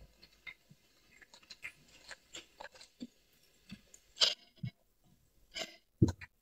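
Close-up chewing and crunching of crispy fried wontons, with soft scattered clicks and smacks throughout and two louder crunches at about four seconds and five and a half seconds in.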